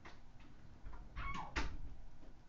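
Vintage Mabie Todd fountain-pen nib scratching on paper in a few short cursive strokes, loudest in the second half, with a brief squeak.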